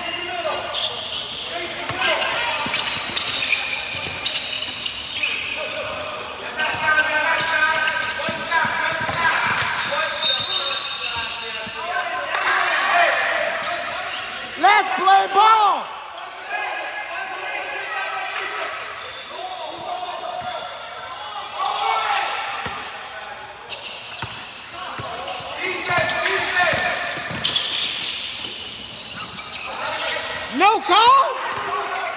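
Basketball being dribbled on a hardwood gym floor during play, with sneakers squeaking and players and spectators talking and calling out, all echoing in a large gym. A loud burst of shoe squeaks comes about halfway through.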